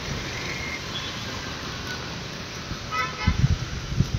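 Street traffic noise with a short car horn toot about three seconds in; a fainter, higher brief toot sounds under a second in.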